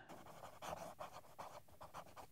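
Pelikan M600 fountain pen's 14-karat gold medium nib writing on paper: a faint run of short scratching strokes as a word is written in cursive.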